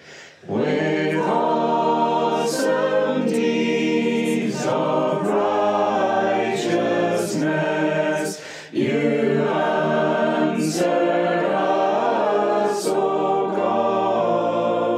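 A group of voices singing a metrical psalm in unison, apparently without accompaniment. A new verse begins about half a second in, with a breath between lines about eight and a half seconds in.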